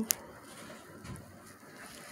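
Quiet room tone, with one short click just after the start.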